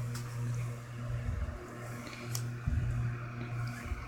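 A steady low hum with a couple of short faint clicks.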